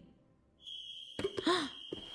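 A steady, high-pitched whistle-like tone begins about half a second in and holds, and a short voiced sound like a sigh or exclamation comes about a second and a half in.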